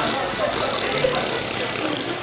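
Baby blowing raspberries, buzzing the lips wetly, with voices in the background.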